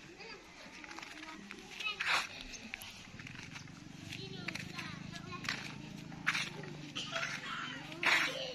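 Distant voices of people, children among them, talking and calling outdoors, never clear enough to make out words, with a few short sharp sounds about two, five and a half and six seconds in.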